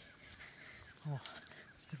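Faint, steady outdoor background noise, with one short spoken word about a second in.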